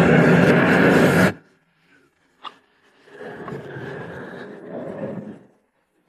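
Stir-frying in a wok over a strong kitchen burner: loud sizzling that cuts off abruptly just over a second in. After a short pause and a single click, quieter sizzling for a couple of seconds.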